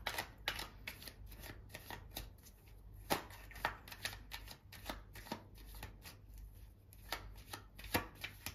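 A deck of tarot cards being shuffled by hand: an irregular run of light card clicks and flicks, a few a second.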